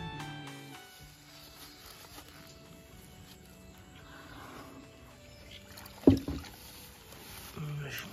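Woven matapi shrimp trap hauled by a line out of the water, with faint water movement and one sudden loud thump about six seconds in as it comes out onto the bank. Guitar music fades out in the first second, and a man starts speaking near the end.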